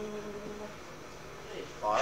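A pause in unaccompanied male folk singing on a cassette recording: the held note trails away, leaving a low steady hum and tape hiss, then a breath and the next sung word near the end.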